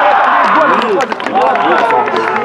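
A man shouting loudly in long, drawn-out cries of celebration as a goal is scored, with scattered hand clapping.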